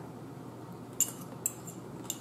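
Metal fork clinking against a small ceramic bowl while eating, two sharp clinks about a second in and half a second apart.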